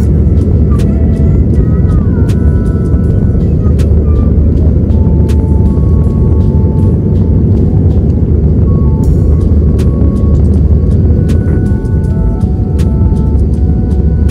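Jet airliner cabin during climb-out after takeoff: a loud, steady roar of the engines and rushing air, with faint scattered clicks and rattles.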